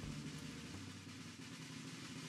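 A quiet, steady snare drum roll.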